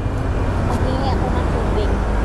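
A road vehicle passing close by, its engine and tyre noise swelling to a steady rumble.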